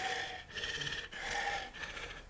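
A man huffing and panting in a few breathy puffs, imitating someone out of breath.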